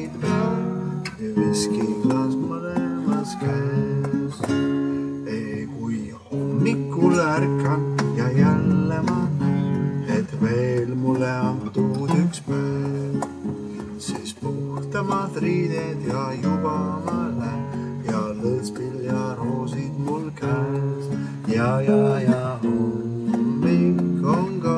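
Acoustic guitar strummed steadily as accompaniment, with a man singing an Estonian song over it.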